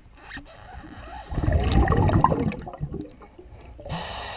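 Underwater gurgling: a burst of air bubbles, typical of a diver's exhaled breath, lasting about a second near the middle, over the muffled rumble of water against the camera.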